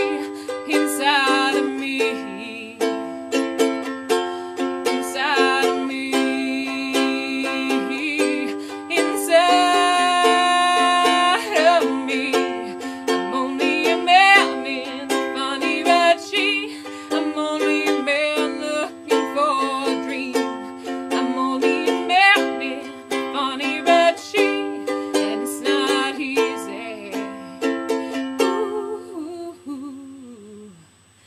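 A strummed ukulele playing chords, with a woman's voice singing without words over it, including a long held note in the middle. The music drops away near the end.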